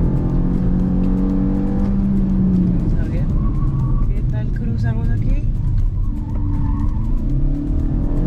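Kia Forte GT hatchback's turbocharged four-cylinder engine heard from inside the cabin while driven hard on a tight track lap. The engine note holds steady for about two and a half seconds, then falls away as the car slows for a corner.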